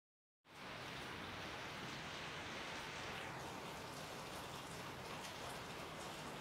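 Steady, even hiss of background noise, starting about half a second in.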